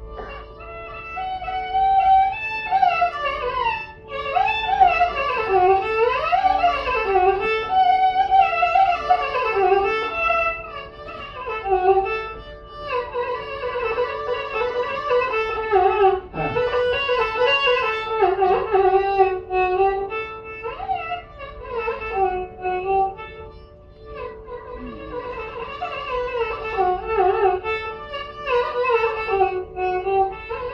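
Carnatic concert music in raga Sankarabharanam: a melodic line of sliding, ornamented phrases over a steady tambura drone, with short breaths between phrases and no drum strokes.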